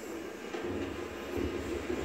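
Dogs play-growling at each other while mouthing: a low, continuous grumble.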